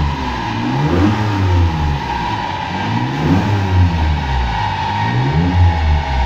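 Nissan 300Z engine being revved up and back down about three times in steady cycles, running on a newly fitted Dictator aftermarket engine management system during tuning.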